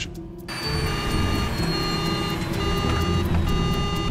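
Cockpit warning alarm sounding in repeated beeps about once a second as the jet's engines fail, over a steady low rumble. A thin high whine slowly falls in pitch over the first couple of seconds.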